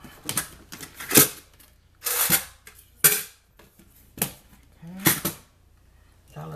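Quarters dropped one at a time into a coin bank canister: six sharp clinks about a second apart.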